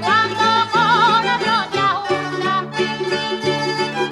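A Canarian folk mazurka played on plucked string instruments, with a wavering, vibrato melody line in the first half over a steadily repeated accompaniment and bass notes.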